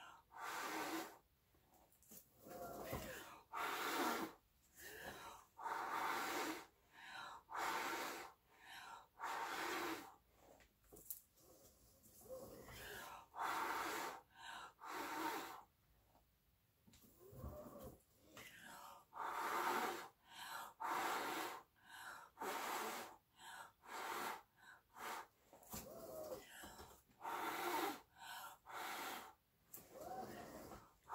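A person blowing by mouth across wet acrylic paint in short, forceful puffs, roughly one a second, with quick breaths drawn in between and a couple of short pauses: blowing the paint outward in a Dutch pour.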